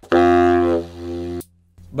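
Baritone saxophone (Conn 12M with an Otto Link mouthpiece) sounding one held low note, loud and bright at first, then softer and darker about two-thirds of a second in, stopping just under a second and a half in. This is a demonstration of subtone: the lower lip is drawn back toward the tip of the reed, so the tone turns breathier and more diffuse.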